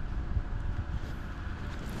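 Wind buffeting the microphone: a steady low rumble with nothing else distinct.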